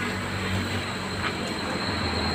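Steady mechanical rumble with hiss and a faint, thin high whine, with no distinct events.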